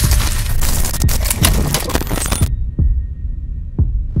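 Sound design for an animated logo intro: a dense, crackling glitch-noise texture full of sharp clicks, which cuts off suddenly about two and a half seconds in, followed by two deep, quickly falling booms about a second apart.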